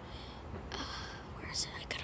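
A person whispering softly: a few short, breathy stretches.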